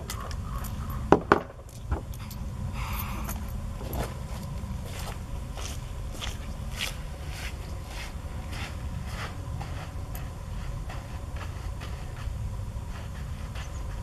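Light handling noises as the shooter resets between revolvers: scattered faint clicks and scrapes and a few footsteps over a steady low rumble, with two sharp clicks about a second in.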